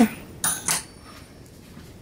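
Two light metallic clinks of kitchen utensils, about half a second in and a quarter of a second apart, with a brief ring.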